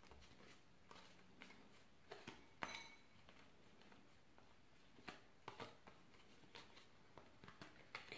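Near silence, with a few faint, scattered clicks of tarot cards being handled and turned over one at a time in the hand.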